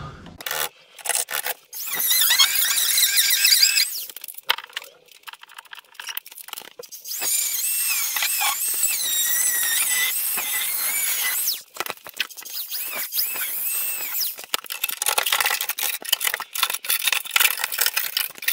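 Angle grinder with a cutting disc slicing through a rusted steel outer sill: a high, squealing whine that wavers in pitch, in several cuts with short pauses between them, the longest from about seven to eleven seconds in.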